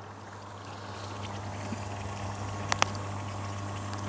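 The OASE AquaOxy 4800 pond aerator's air pump running with a slight, steady hum, just switched on and pushing air to the aerator balls, over faint bubbling from the aeration. The hum grows a little louder over the first second or so, and two quick clicks come about two-thirds of the way through.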